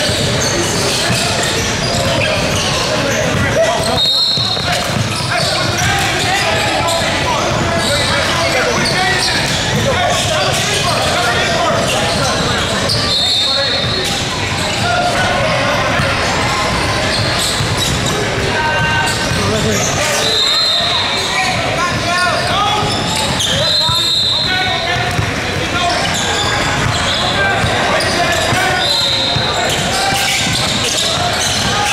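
Basketball game sounds in a large gym: a basketball bouncing on the hardwood court amid indistinct chatter from players and spectators, with several brief high-pitched squeaks.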